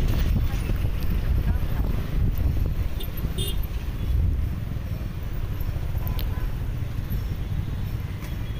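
Low rumble of wind on the microphone mixed with a motorcycle's running noise as it rides slowly through city traffic. A few short, sharp traffic sounds come through about three seconds in and again about six seconds in.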